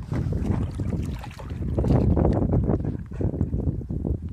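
Wind buffeting the microphone in an uneven rumble, with water sloshing and splashing as a dog wades and shifts in shallow muddy water; the sloshing is heaviest in the middle.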